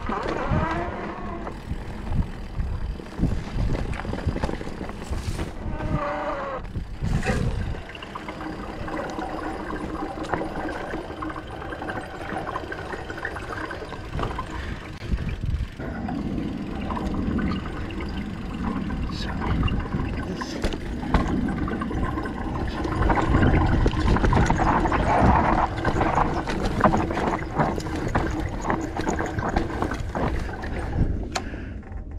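Mountain bike rolling along a rough dirt singletrack: a steady rumble of wind on the microphone and tyres on dirt, with irregular rattles and knocks from the bike over bumps and ruts.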